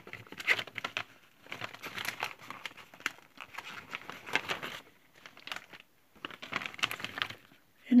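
Paper and plastic packaging crinkling and rustling in irregular bursts as a card is pulled out from under the contents of a mailed envelope.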